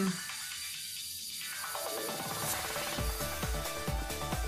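Background music; a bass beat comes in about three seconds in.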